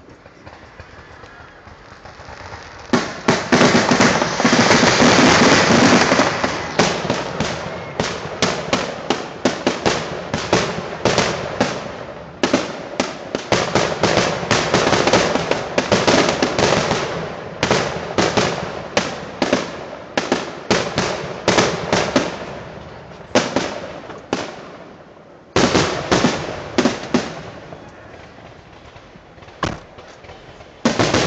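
Fireworks finale barrage: aerial shells bursting in rapid, overlapping succession, their many loud reports running together from about three seconds in. Near the end the barrage slackens, with a short lull and a last cluster of bursts before it quietens.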